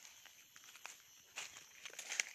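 Faint footsteps on dry fallen leaves, a few soft, crackling steps in the second half.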